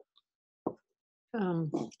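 A gap of dead silence broken by one short pop about two-thirds of a second in, then a person starts speaking, in Tlingit, a little past halfway.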